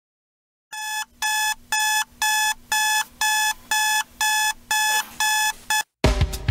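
Alarm beeping: a high electronic tone pulsing about twice a second, starting about a second in and stopping abruptly just before the end. It is a morning wake-up alarm going off.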